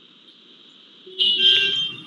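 A steady, high-pitched electronic tone, faint at first, then much louder for the last second or so.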